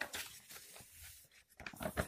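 Sheets of a printed question paper being handled and turned: irregular rustling and crinkling of paper.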